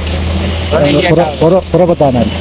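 A man talking in Tamil, with a steady low hum underneath.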